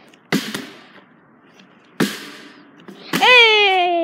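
A flipped plastic water bottle knocking down onto a metal mesh patio table: two quick knocks a third of a second in and another at about two seconds. Then, loudest of all, a child lets out one long cry that slides down in pitch.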